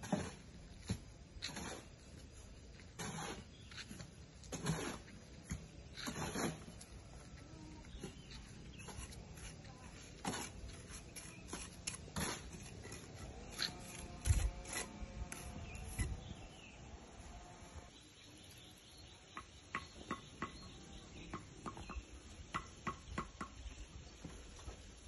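Irregular knocks and taps of hand building work, heavier in the first few seconds and again about two thirds of the way through, with quicker light taps near the end.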